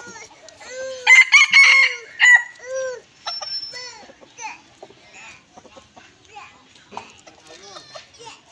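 Red junglefowl rooster crowing: one loud crow of several short clipped notes, starting about a second in and ending about three seconds in. Softer, fainter calls follow.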